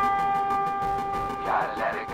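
Background music: a chord of steady held notes, with a brief swirl of sound about one and a half seconds in.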